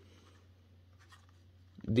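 Faint rubbing and a few light clicks of fingers handling a stack of clear plastic clamshell RAM packs, over a low steady hum. A man's voice starts near the end.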